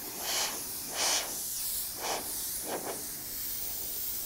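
Airbrush spraying paint onto a panel, a steady hiss that swells about four times as the trigger is worked.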